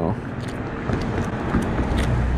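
Low rumble of passing motor traffic that swells near the end, with a few faint light clicks.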